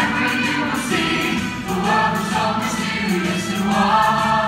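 A stage cast singing together in chorus, moving into long held notes about a second in.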